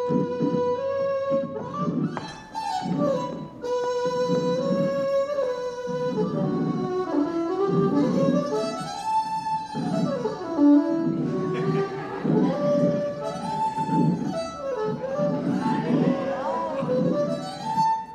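Violin playing a tune, with some notes sliding up and down, over a steady rhythmic pulse lower down.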